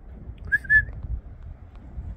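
Two short, quick whistled notes about half a second in, over a low steady rumble.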